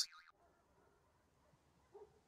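Near silence: the last of a word from the narrating voice at the very start, then faint hiss, with a brief faint sound near the end.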